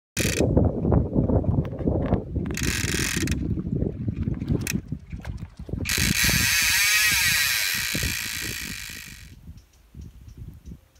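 Salmon fly reel's click-and-pawl ratchet clicking rapidly as line is pulled off by a running fish. Three times it rises to a high buzz as the line goes out faster, the last and longest near the end before it fades away.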